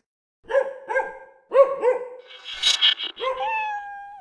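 Small dog barking: about four short yaps, then a longer drawn-out call near the end that falls slightly in pitch.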